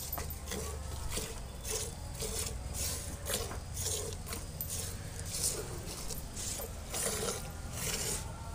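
Hand-milking of a buffalo: alternating squirts of milk hissing into a steel bucket, about two a second in a steady rhythm.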